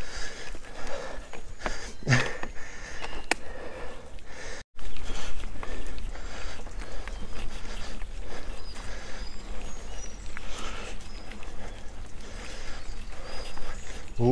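Mountain bike rolling along a dirt forest trail: tyre noise on the ground, rattles and knocks from the bike, and wind on the microphone. Faint bird chirps come through in the second half, and the sound cuts out for an instant about a third of the way in.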